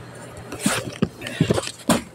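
A few soft, irregular taps and knocks, about four in the second half, after a brief rustle.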